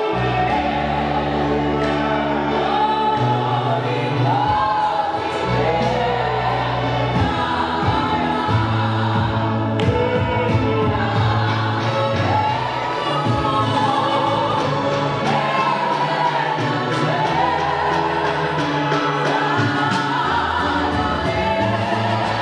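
A church congregation singing a gospel hymn together, many voices in a full choir sound. Sustained low bass notes underneath shift every second or two.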